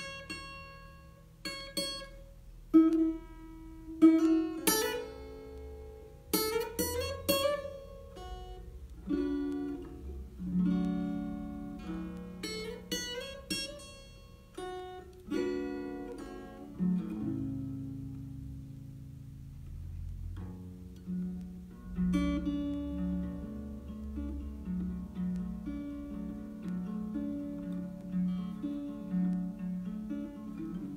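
Acoustic guitar played by hand: plucked notes and chords, with a few notes sliding up in pitch in the first several seconds, settling into a steadier picked pattern from about halfway. The player reckons the guitar is probably out of tune.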